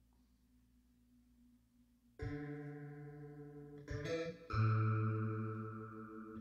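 Layered keyboard patch from a software synth: a low bass synth with a distorted guitar sound through a Leslie rotating-speaker effect, playing three chords, the first about two seconds in and the last the loudest and held.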